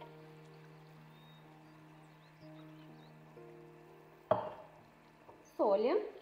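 Water being poured from a glass jug into a frying pan of quinoa, faint under soft background music. A sudden sharp sound about four seconds in, and a brief voice near the end.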